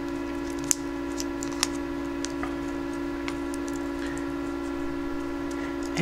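Steady electrical hum throughout, with a few faint, scattered clicks from a brass buckle and leather strap being handled.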